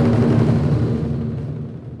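Transition sting for a logo animation: a low, rumbling swell with a held low tone, loudest at the start and fading away over about two seconds.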